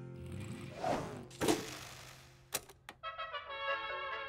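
Animated airplane's engine running low with two whooshing surges. Then two sharp mechanical clicks, a cassette boombox being switched on, and brass-led music starts about three seconds in.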